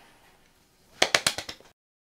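The tail of fading music, then about a second in a quick run of about seven sharp clicks or knocks, coming faster and fainter, before the sound cuts off.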